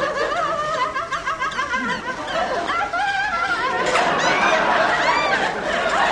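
People giggling and laughing in quivering, high-pitched bursts, with a few rising and falling squeals about two-thirds of the way through.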